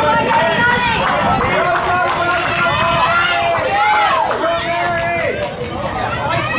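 Several spectators' voices, mostly high-pitched, shouting and calling out over one another.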